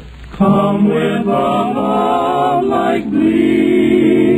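Male barbershop quartet singing close-harmony chords. The voices come in after a brief pause about half a second in, and the chord changes about three seconds in.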